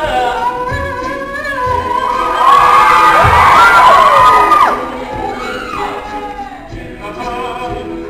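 All-male a cappella group singing live: a soloist over sustained backing chords with a regular low vocal beat. About halfway through the sound swells as audience whoops and cheers rise over the singing, then settles back to the group.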